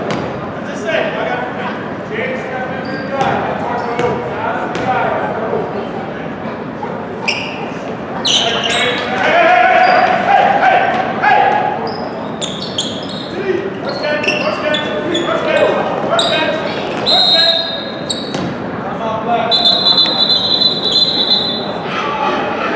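Basketball game in a gym: voices of players and spectators echoing through the hall over a basketball bouncing and short sharp squeaks and knocks. A long high steady tone sounds twice near the end.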